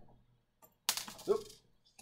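A sudden clatter about a second in, something knocked or dropped by mistake, fading over about half a second and followed by a short "Oop!".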